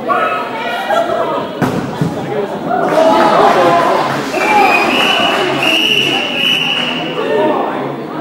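Players shouting and calling out across an echoing sports hall, with a few sharp thuds of dodgeballs hitting the floor or players in the first couple of seconds. A steady high note holds for about two and a half seconds past the middle.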